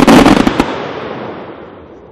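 Vulcan 1.3G instant salute cake firing its salutes all at once: a rapid volley of loud bangs packed into about the first half-second, then a long rolling echo that fades away.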